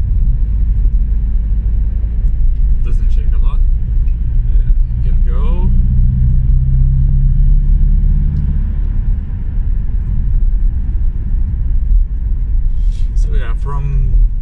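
In-cabin driving noise of a 2008 Volkswagen Jetta with a 2.0-litre turbo diesel: a low road and engine rumble throughout, with a steadier engine drone for a few seconds in the middle.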